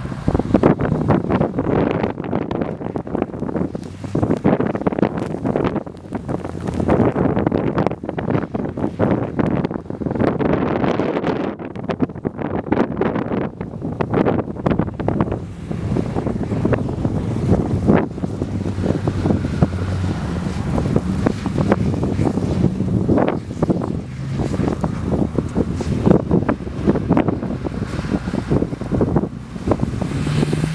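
Strong wind buffeting the microphone in gusts, over the W12 engine of a Bentley Continental GTC revving as the all-wheel-drive car slides through snow doing donuts. The engine's note comes through more clearly in the second half.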